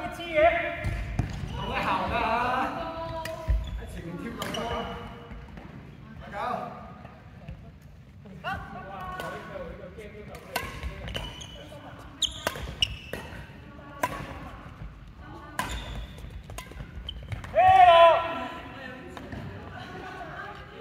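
Badminton rally: a run of sharp racket-on-shuttlecock strikes and footfalls on a wooden sports-hall floor, mostly in the middle of the stretch. Players' voices call out at the start and loudly once near the end.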